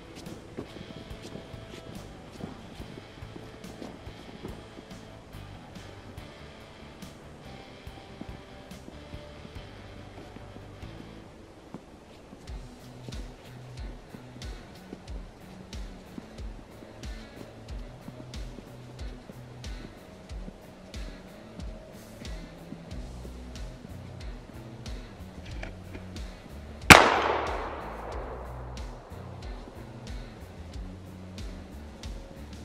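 A single shot from a .410 break-barrel single-shot shotgun, fired about 27 seconds in, with a sharp crack that rings out for a couple of seconds. Background music with a steady beat plays throughout.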